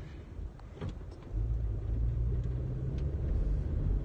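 Low, steady car rumble heard from inside the cabin, growing louder about a second and a half in and holding.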